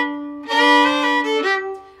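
Fiddle playing the tune's opening notes as double stops against a sustained open D string drone. The upper note changes about half a second in and again near the end.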